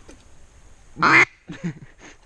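Duck call blown in three quacks: one loud, drawn-out quack about a second in, then two short, quieter quacks just after.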